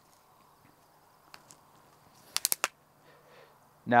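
A quick run of four sharp clicks from the leg-angle locks of a 3 Legged Thing Jay travel tripod as a splayed leg is swung back toward its normal angle, after one faint click.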